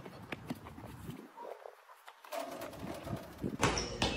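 Faint, irregular knocks of a basketball bouncing on an outdoor court. A louder sound comes in just before the end.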